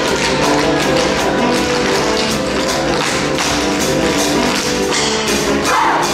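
Live theatre pit band playing an upbeat show tune, with crisp percussive taps keeping a steady, even beat.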